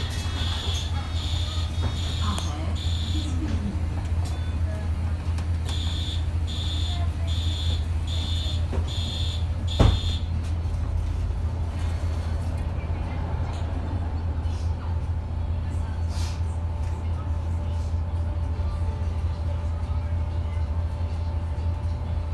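Inside a MAN Lion's City city bus: the engine runs steadily while a high warning beeper sounds in two runs of evenly spaced beeps, typical of the door-closing warning. A sharp thump comes about ten seconds in, then a steady whine joins the engine noise as the bus drives on.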